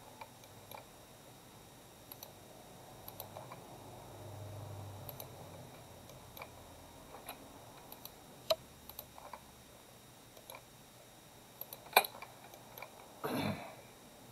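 Scattered single computer-mouse clicks, a few seconds apart and irregular, over quiet room tone; the sharpest click comes near the end.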